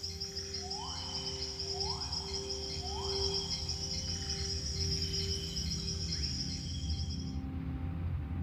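Recorded rainforest ambience from a film soundtrack playing over a hall's speakers: dense, steady, high insect chirping over a soft held music drone, with three rising calls about a second apart near the start. The insect chirping cuts off suddenly near the end.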